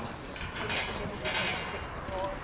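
Indistinct distant voices of players on a rugby pitch over a steady low rumble, with two short hissy bursts about half a second and a second and a half in.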